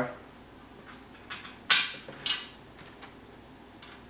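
Small metal bolts and backing plates clinking against a black metal wind deflector panel as they are fitted by hand: a sharp clink a little under two seconds in, a second one shortly after, and a few lighter ticks.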